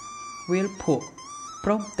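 Spoken narration over background music, with a long steady high note from the music holding between the phrases.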